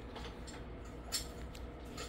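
A few light clicks and one sharper tap just over a second in, over a low steady hum.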